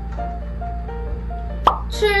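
Light background music: a simple melody of short, steady notes. A single short pop sounds about one and a half seconds in.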